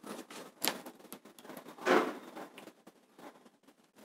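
Quiet room with faint rustles of handling: a brief one a little after half a second and a longer one around two seconds.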